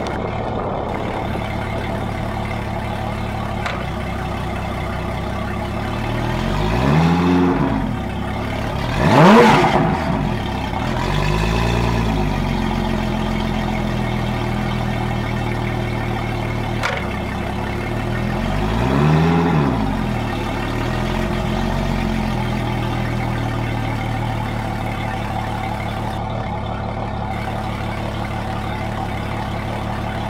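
Yamaha 300 hp four-stroke V6 outboard running on a flushing hose, idling steadily and revved up and back down several times. The quickest and loudest rev comes about nine seconds in, with slower rises and falls just before it and again around twenty seconds in.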